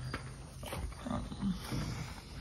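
Chickens in the coop giving a few short, low clucks, spaced out across the two seconds.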